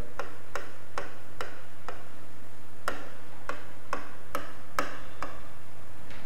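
Marker pen tapping and clicking against a writing board as a word is written, about a dozen sharp irregular clicks, roughly two a second, over a steady low hum.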